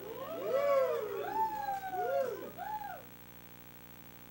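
Several voices making long sliding calls together, each rising and then falling in pitch and overlapping one another, for about three seconds before stopping.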